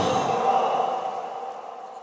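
A man sighing into a handheld microphone: a breathy exhale that fades away over about a second and a half.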